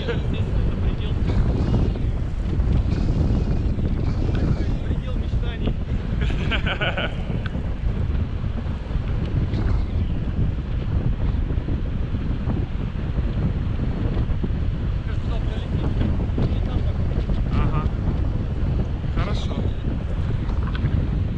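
Wind buffeting a camera microphone in flight under a tandem paraglider: a steady, heavy rush of airflow, strongest in the low range.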